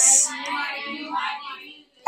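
A higher-pitched voice, drawn out in a sing-song way, softer than the lecturer's speech and fading out near the end.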